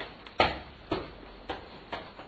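A series of sharp knocks, evenly spaced about two a second.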